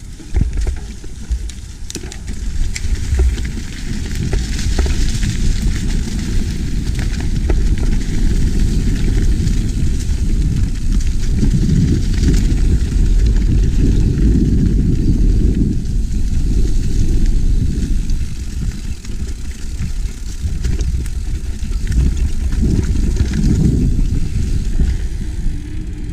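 Wind buffeting a mounted action camera's microphone, with the rumble and rattle of a downhill mountain bike riding fast over cobblestones and a dirt trail. Scattered sharp knocks come from the bike hitting bumps.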